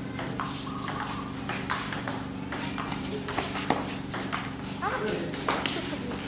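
Table tennis rally: the celluloid ball ticking sharply off paddles and table, about two to three hits a second.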